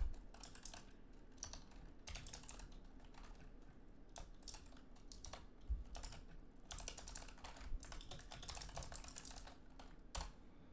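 Faint computer keyboard typing: irregular bursts of keystrokes with short pauses between them, as a line of code is typed.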